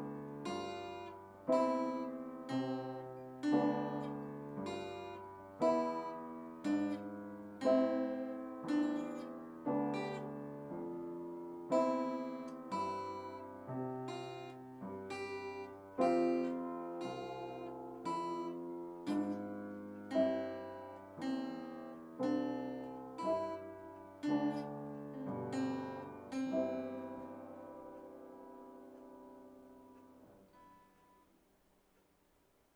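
Solo instrumental music: single notes and chords, each ringing and dying away, at an even, moderate pace. It ends on a last chord that fades out near the end.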